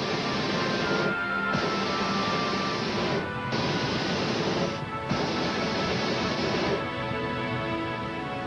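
Hot air balloon propane burner firing in four blasts, each one to two seconds long with short breaks between; the last stops about a second before the end. Background music runs underneath.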